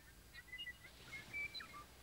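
Faint bird chirps: a handful of short, high whistled notes.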